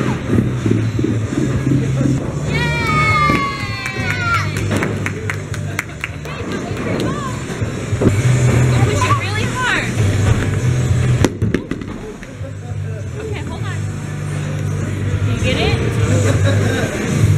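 Bowling pins clattering as a ball knocks them down about three seconds in, with a high voice calling out at the same moment and a single sharp knock later on. Background music with a steady bass line runs underneath throughout.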